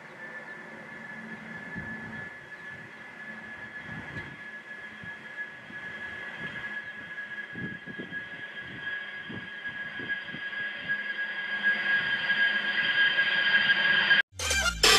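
B-2 Spirit stealth bomber's four General Electric F118 turbofan engines whining as the aircraft rolls along the runway. Two steady high whining tones sit over an uneven low rumble, and a third, higher tone joins about halfway. The sound grows steadily louder as the bomber comes closer.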